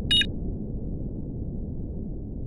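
Outro logo sting: a short, high electronic blip just after the start, over a steady low rumble.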